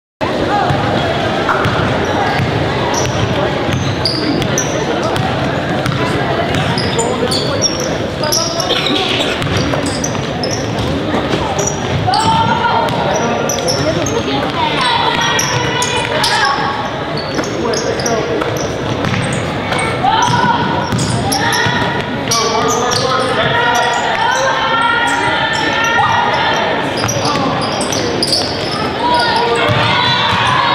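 A basketball being dribbled and bouncing on a hardwood gym floor during play, with shouting voices joining in from about halfway through, all echoing in a large gym.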